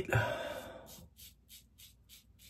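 Stainless-steel Goodfellas' Smile Syntesi double-edge safety razor scraping through lathered stubble on the neck. It makes short, faint, scratchy strokes, about three a second.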